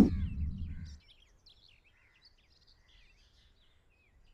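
A low rumbling sound fades away over the first second, then faint, scattered bird chirps sound in near quiet.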